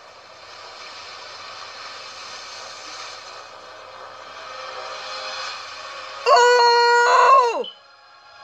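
A man's loud, wordless excited yell, held steady for over a second and falling in pitch as it ends, about six seconds in. Before it there is only a faint, even noise from a movie trailer's soundtrack.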